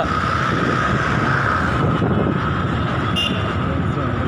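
Steady riding noise from a motorcycle moving through town traffic: its engine running under a dense rush of road noise, with a steady high hum throughout.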